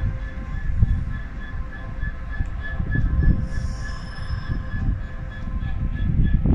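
A train moving along the station tracks: a continuous low rumble of wheels on rails that swells and eases, with a steady high-pitched whine held above it.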